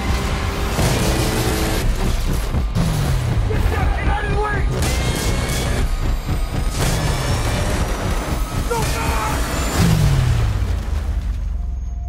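Action-trailer sound mix over music: three deep booms, each sliding down in pitch, about three, seven and ten seconds in, among dense impacts and noise.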